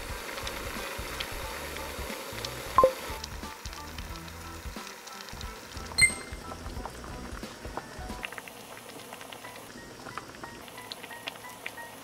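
Background music over a pot of braised beef short ribs bubbling at a boil. Two short, bright tones ring out, about three seconds in and again about six seconds in.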